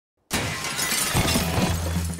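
A sudden crash of shattering glass and breaking debris a third of a second in, going on as a dense clatter, with a low steady hum beneath.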